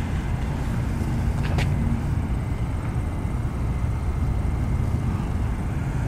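Steady low rumble of outdoor background noise, with a faint hum that stops about two seconds in and a single click about a second and a half in.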